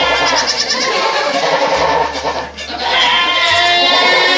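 Nigerian Dwarf goats bleating loudly in overlapping long calls, with a brief lull about two and a half seconds in.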